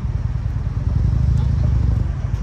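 Deep, steady exhaust rumble of a C7 Corvette's V8 as the car rolls slowly in at low speed.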